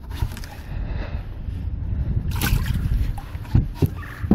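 Low rumbling noise of a boat on the water picked up by a head-mounted camera, with handling noise from a landing net and gear on the boat deck. There is a short loud burst of noise about two and a half seconds in and a few light knocks near the end.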